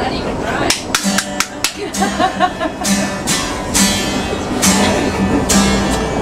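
Acoustic guitar being strummed, a chord about every half second to second.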